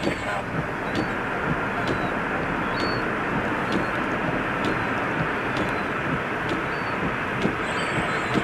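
Steady roar of an Airbus A340-600's four Rolls-Royce Trent 500 jet engines as the airliner rolls out along a wet runway after landing. A faint tick sounds about once a second.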